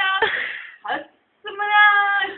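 A person's high-pitched voice: a short cry at the start, then a long, steady high held note in the second half.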